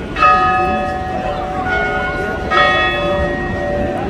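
Bells chiming: struck notes of different pitches, each ringing on, the strongest just after the start and again about two and a half seconds in.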